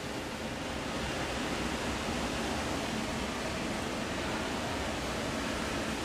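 A steady, even hiss of background noise with no distinct knocks or clicks.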